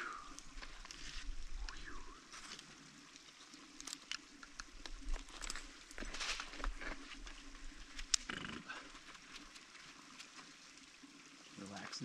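Faint effortful breathing and grunts from an ice climber on steep ice, with a few sharp knocks of ice tools and crampons biting into the ice, the clearest about eight seconds in.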